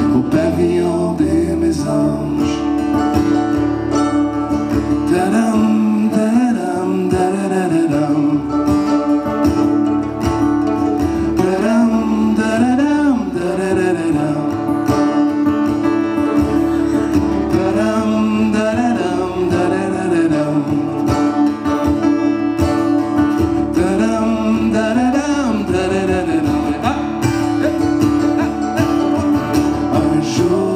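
Live acoustic folk-pop song: a strummed acoustic guitar and a mandolin, with male voices singing over them.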